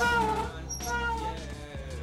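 Mongoose Dolomite fat bike's disc brakes squealing twice under braking, each squeal a high pitched tone that sags slightly in pitch. The brakes are out of adjustment as they come out of the box.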